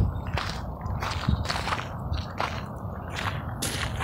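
Wind rumbling on a phone's microphone outdoors, with scattered clicks and rustles from the phone being handled and moved while walking.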